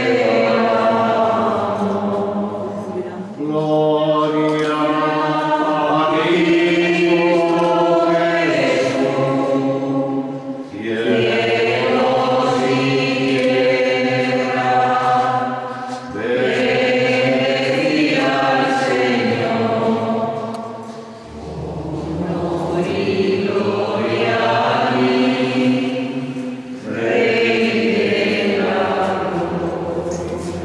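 Choir singing a slow sacred chant in long sustained phrases of about five seconds each, with short pauses for breath between them.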